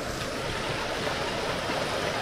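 Shallow, fast-flowing river rushing over stones and rapids: a steady, even rush of water.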